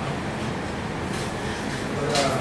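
A steady low mechanical rumble with a hiss, with no clear beat or single event.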